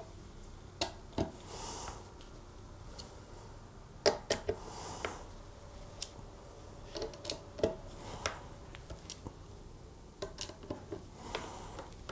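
Hand screwdriver tightening the neck bolts through the chrome neck plate of a Squier Affinity Telecaster: scattered light clicks of the bit seating in the screw heads and a few short scraping turns.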